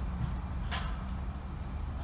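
Steady outdoor background noise: a low rumble with a light hiss, and one brief faint sound about three-quarters of a second in.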